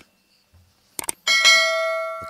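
Subscribe-button animation sound effect: a few quick clicks about a second in, then a notification-bell chime that rings and slowly fades.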